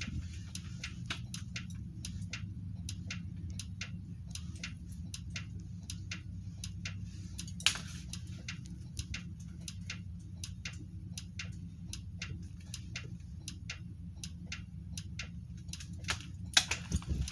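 A steady low vehicle rumble inside a bus, with many light, irregular clicks and ticks a few times a second and one sharper click about eight seconds in.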